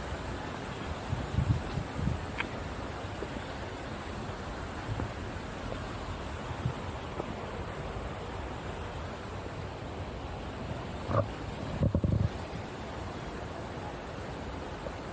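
Steady outdoor background hiss, with short low bumps of wind on the microphone about a second in and again, loudest, near the end.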